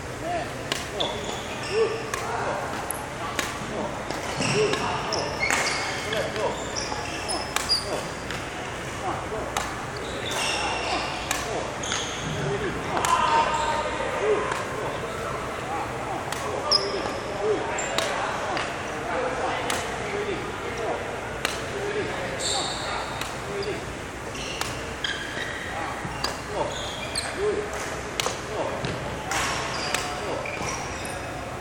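Badminton rackets hitting shuttlecocks and court shoes squeaking and stepping on a wooden sports-hall floor during a footwork and hitting drill. The sharp hits and squeaks come irregularly, echoing in the large hall.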